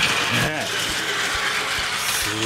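Plarail W7-series Kagayaki toy Shinkansen running on plastic track: its small battery motor and gearbox whirring steadily, with scattered clicks from the running gear.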